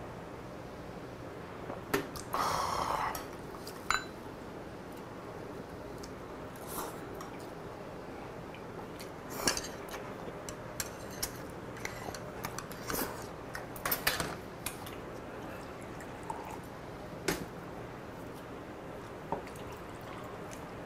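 Metal chopsticks and tableware clicking against dishes and bowls while someone eats, a sparse scatter of sharp clicks. About two seconds in there is a short, louder breathy burst.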